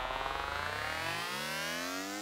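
Serum synthesizer riser: a buzzy digital wavetable tone gliding steadily upward in pitch from about half a second in, its timbre shifting as an LFO sweeps the wavetable position.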